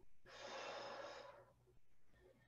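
A woman's forceful exhale, about a second long, from the effort of a set of dumbbell rows.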